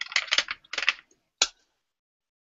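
A quick run of clicks and clatter from small hard objects, then one sharp click about a second and a half in.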